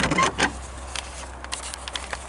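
Handling noise of a handheld camera being swung round: a few soft knocks and rustles over a steady low rumble.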